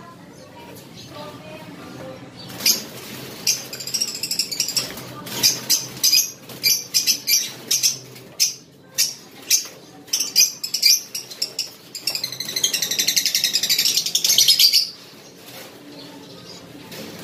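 Caged lovebirds squawking and flapping as a hand reaches into the cage to catch the hen, a run of short sharp calls, then about three seconds of harsh, rapidly pulsing alarm calling near the end.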